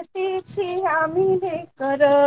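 A woman singing a Marathi poem solo, her melody rising and falling through one phrase and then settling on a held note near the end.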